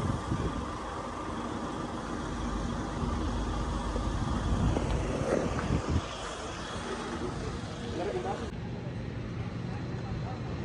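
Outdoor street noise: a steady low rumble like an idling vehicle or wind on the microphone, with indistinct voices now and then.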